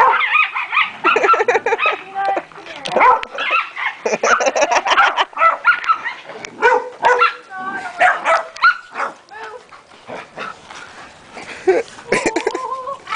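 Several dogs barking, yipping and growling in rough play-fighting, with rapid, overlapping sharp calls that ease off briefly about ten seconds in.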